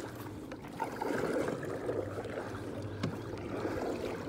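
Water sloshing and splashing against a canoe, mixed with muffled rubbing and a few light knocks.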